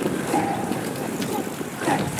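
Brief shouts of encouragement heard from a distance over a steady rushing noise.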